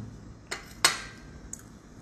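Metal table knife set down on a plate, clinking twice, with the second clink the louder, and a faint tap after.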